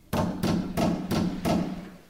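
Five loud knocks on a door in a slow, even series, about three a second.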